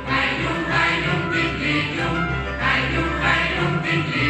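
Wallachian folk song sung by a mixed group of men and women, accompanied by several violins, in two sung phrases.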